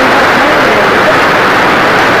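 Heavy hail and rain falling hard, a loud, steady, unbroken noise of pelting stones.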